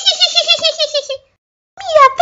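A high-pitched voice in a quick run of short pulses, about ten a second, gently falling in pitch and stopping a little after a second in.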